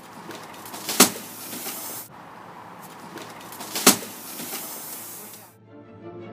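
Two sharp knocks about three seconds apart over rustling handling noise, then music starts near the end.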